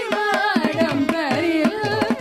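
Carnatic classical music: a woman singing a richly ornamented melody that glides and oscillates in pitch, with violin accompaniment and steady mridangam strokes.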